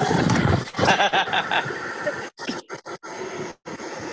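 Hearty laughter in short repeated bursts, loud at first, with the sound cutting out completely several times in the second half.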